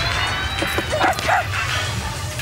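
Cartoon puppy barking: a quick run of short, high yaps starting about half a second in and lasting about a second, over background music.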